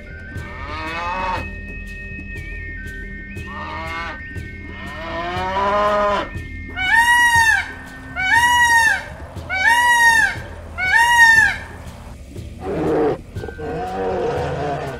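Calves mooing a few times, then a peacock (Indian peafowl) giving four loud wailing calls in a row, each rising then falling, about a second and a half apart.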